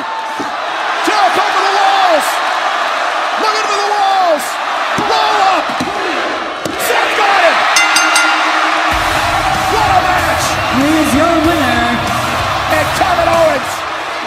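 Wrestling arena crowd noise, with many voices yelling and a few thuds of bodies hitting the ring. About nine seconds in, music with a heavy low bass comes in under the crowd.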